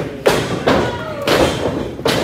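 Thuds of pro wrestlers' bodies and feet hitting the ring canvas and ropes. The sharpest comes about a quarter of a second in. Spectators are shouting.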